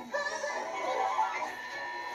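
Film soundtrack music with singing, played through a TV's speakers and picked up in the room.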